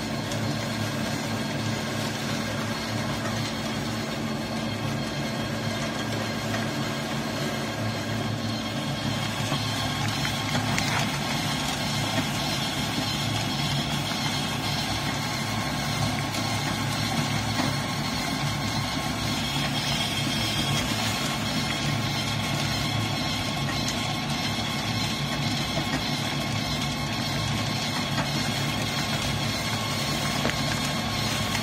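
Coal dust pellet press running steadily, a continuous machine hum with a low drone that shifts slightly about ten seconds in.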